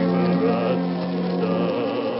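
Hungarian gypsy band's bowed strings playing an instrumental passage of a slow Hungarian song, with a low note held until near the end and wavering notes above it.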